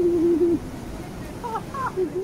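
A voice holding a drawn-out, wavering 'ooh' for about half a second, followed by a couple of short rising squeaks near the end.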